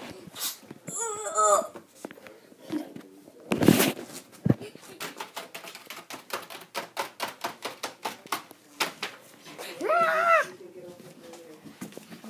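A child's brief high squeals, a loud thump and rustle about four seconds in, then a fast run of light clicks and taps for several seconds, with another short squeal near the end.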